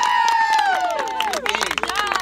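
A group of young children cheering with a long, held shout that trails off about a second and a half in, then hand clapping.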